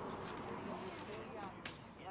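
Indistinct voices of people talking, with one sharp click about one and a half seconds in.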